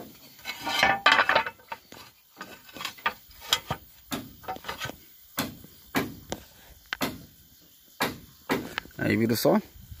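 Flat ceramic roof tiles being set down and shifted on wooden roof battens: a string of separate sharp clinks and knocks, with a denser, louder clatter about a second in.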